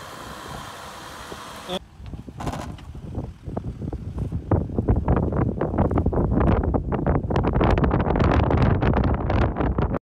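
Gusty wind buffeting the microphone, crackling and rumbling and growing louder from about halfway through, over a Jeep Wrangler Rubicon with the 3.0 V6 EcoDiesel crawling up a dirt hill.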